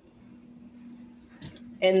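Quiet room tone with a steady low hum, and a faint soft knock about one and a half seconds in as a plastic vinegar bottle is lifted off a granite counter. A woman's voice starts near the end.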